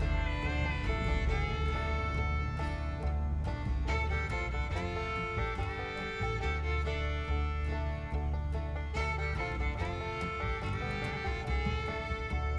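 Background music: an instrumental tune with fiddle and guitar over a steady bass.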